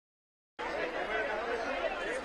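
Several people talking at once in overlapping chatter, starting abruptly about half a second in after silence.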